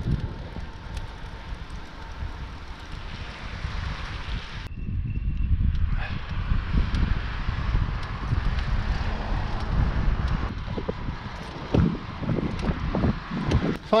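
Wind rumbling on the microphone of a camera carried on a road bike during a climb, with the bike's rolling noise on the tarmac underneath and a few short bumps in the later seconds.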